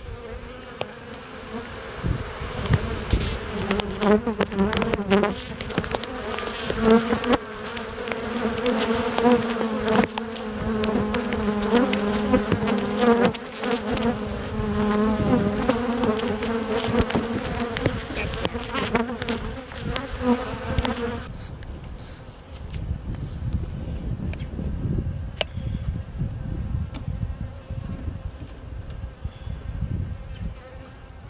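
Honeybees buzzing over an open hive box, a steady hum that wavers slightly in pitch, with scattered scrapes and knocks as the wooden lid is slid back over the box. The buzzing drops away abruptly a little over two-thirds of the way through, once the lid covers the frames, leaving a low rumble.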